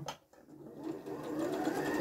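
Electric domestic sewing machine stitching a short row of long tacking stitches across a fabric dart. The motor starts about half a second in, builds up and then runs at a steady whir.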